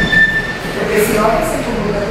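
People talking around a meeting table, with a brief steady high-pitched squeal in the first second.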